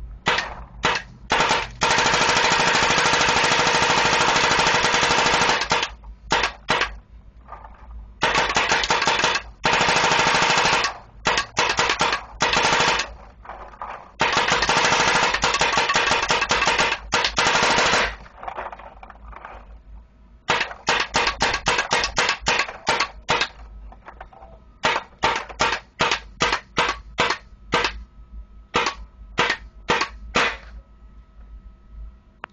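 WGP Synergy paintball marker firing rapid strings in PSP mode, capped at 13 balls a second. Three long continuous strings come first, then shorter strings of separately heard shots in the second half.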